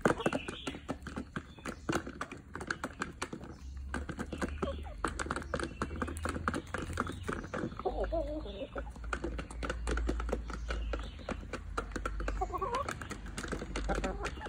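Chickens pecking feed off the ground: a rapid, continuous patter of beak taps, with short low clucking calls about eight seconds in and again near the end.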